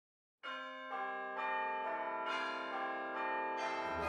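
Bells ringing a descending run of about eight evenly spaced strikes, roughly two a second, like change-ringing rounds. Each note rings on under the next. The run starts about half a second in.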